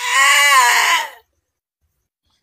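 A woman lets out one loud, high-pitched drawn-out cry, not words, lasting just over a second and then stopping.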